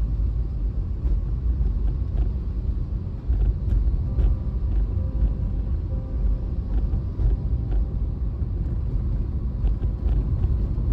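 Steady low rumble of road and wind noise from a moving vehicle in busy traffic of motorcycles and cars.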